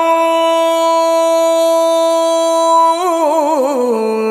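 A woman singing vọng cổ holds one long note perfectly steady for about three seconds, then breaks into a wide vibrato and slides downward near the end: the drawn-out sustained syllable of the 'hơi dài' (long-breath) singing style.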